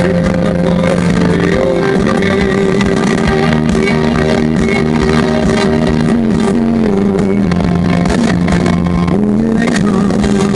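Rock band playing live and loud: electric guitar, bass and drums in an instrumental passage with long held notes that step from pitch to pitch, and no singing.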